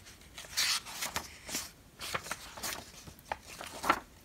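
Paper pages of a workbook being handled and turned, a series of short rustles with a few light clicks.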